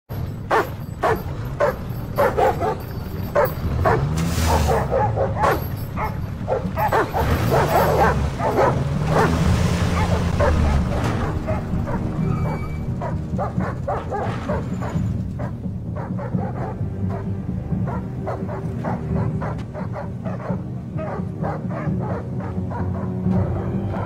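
A large dog barking repeatedly and aggressively over background music. The barks are densest in the first half and thin out later.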